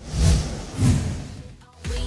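Two whooshing swells, each with a low boom, from an animated logo transition. A dance track with a steady beat kicks in near the end.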